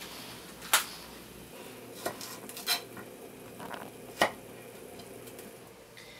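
A head of cauliflower being broken apart into florets: a handful of sharp, crisp snaps spaced about a second apart.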